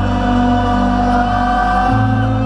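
Live trip-hop band music: a long, slightly rising sung note held over steady low bass and synth chords, which change pitch near the end.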